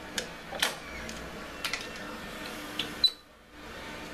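A few light clicks and knocks, like tools or parts being handled in a workshop, over a steady low hum; the sharpest knock comes about three seconds in, then the sound drops out briefly before the hum returns.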